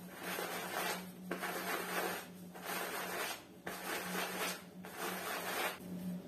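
Soft-bristled silicone brush stroked over the quilted fabric of a down jacket, about five scratchy brush strokes roughly a second apart, working clumped down loose after washing.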